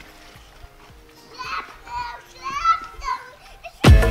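A young child's voice calling out several times in short, high-pitched calls. Music cuts out at the start and comes back in just before the end.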